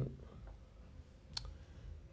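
A pause in a man's talk: faint low hum of the recording, with one short, sharp click about one and a half seconds in.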